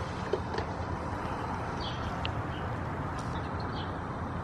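Steady low background rumble with a few faint, short high chirps, like small birds.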